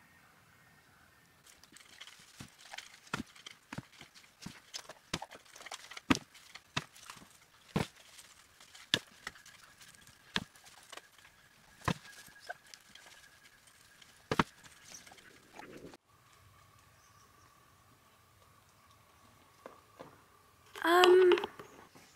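Stable fork knocking and scraping while bedding is sifted during mucking out: a run of irregular sharp knocks, one or two a second, for about fourteen seconds.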